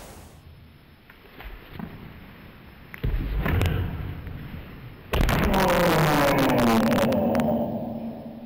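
A dull thud about three seconds in, then a loud shout about five seconds in that holds for over two seconds with its pitch falling: a karate kiai, with sharp snaps through it.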